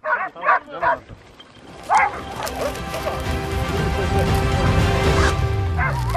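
Hunting hounds barking and yelping in quick bursts in the first second, with another bark about two seconds in. Then music with sustained notes comes in and builds to the end.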